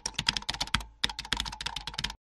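Typing sound effect: rapid key clicks, with a brief pause a little before the middle.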